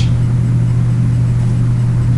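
Steady low hum with a faint hiss, unchanging throughout.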